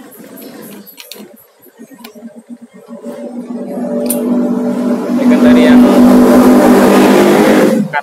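A few light clicks, then a loud motor drone with a steady humming pitch swells over about two seconds, holds, and cuts off suddenly just before the end.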